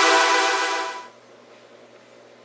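Final sustained synth chord of an electronic intro jingle, fading out about a second in, followed by a faint steady low hum of room tone.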